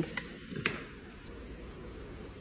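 Quiet steady hiss with two faint clicks in the first second.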